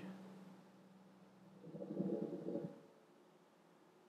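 A brief low hum or murmur from a person's voice, lasting about a second midway, over quiet room tone.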